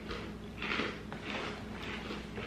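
Dry breakfast cereal being chewed and a cardboard cereal box being picked up and handled: a few short crunching and rustling noises over two seconds.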